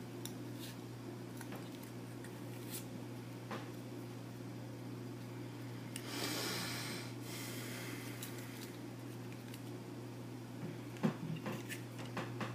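Paracord being worked and pulled through the holes of metal lamellar plates by hand: scattered light clicks, a brief rasp of cord through the plates about six seconds in, and a few sharper clicks of the plates knocking together near the end.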